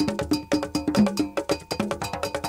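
Ghanaian traditional percussion: an iron bell struck in a fast repeating pattern over hand drums, playing a steady, driving rhythm.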